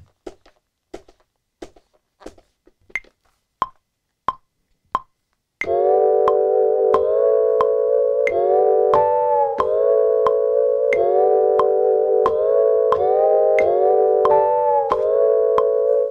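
Steady short ticks at about one and a half a second, then, about five and a half seconds in, sampled chords start playing from the Maschine+ sampler pads in time with the ticks. Each chord is held and changes every beat or two, including a slice pitched up a semitone.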